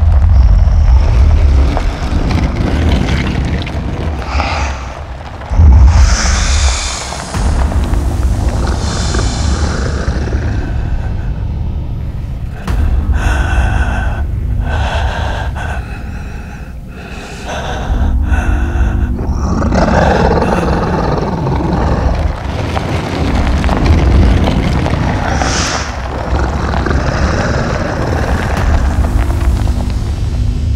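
Film action soundtrack: dramatic score over a heavy, continuous low rumble, with booms and abrupt loud hits that change the texture several times.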